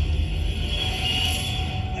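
Ambient documentary background music: a low rumbling drone under a single held tone, with a high shimmering layer that swells in the middle.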